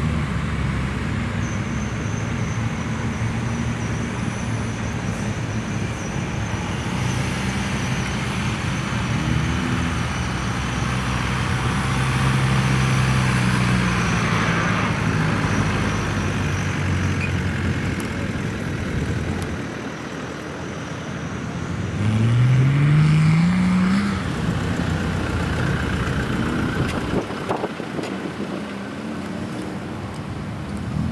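Off-road 4x4 engines working at low speed on a steep climb. A little past two thirds of the way in, the Jeep Wrangler's engine revs up, its pitch rising for about two seconds, the loudest moment.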